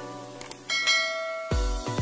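Subscribe-animation sound effects: two quick clicks, then a notification-bell ding ringing on with bright high overtones. About one and a half seconds in, electronic dance music with a heavy bass beat starts and is the loudest sound.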